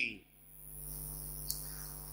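Steady low electrical hum with a faint high hiss, typical of a microphone and amplifier system left open between sentences, and one small click about one and a half seconds in.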